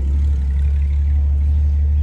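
A steady low rumble with no other sound standing out.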